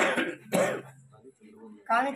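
A man clearing his throat: two short rasping bursts in the first moment, then a brief quiet pause before his speech resumes.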